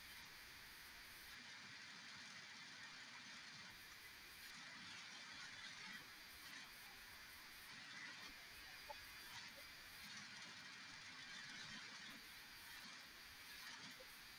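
Near silence: faint steady hiss of a video-call recording, with one tiny click about nine seconds in.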